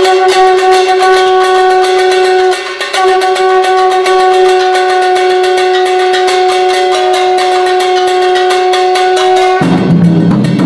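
A conch shell blown as a horn, holding one long steady note that breaks off briefly about two and a half seconds in and then sounds again, over a fast roll of percussion strokes. Near the end the horn stops and lower drums come in.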